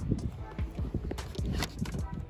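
Footsteps in boots on snow at a front doorstep: irregular soft thumps, with a few sharper clicks from handling the front door by its knob.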